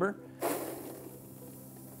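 Dry brewing grain poured from a metal pot into a brewing machine's chamber: a sudden rushing hiss about half a second in that slowly fades.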